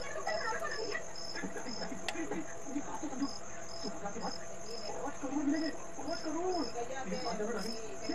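Crickets chirping: a continuous high trill with short, evenly spaced chirps about twice a second, in runs with brief pauses. Indistinct voice sounds run underneath.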